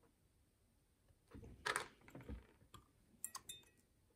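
Small metal lock parts of a DOM 333S cylinder being worked apart by hand. About a second in there is a faint sliding scrape with a sharp clink, then a quick run of small metallic clicks near the end.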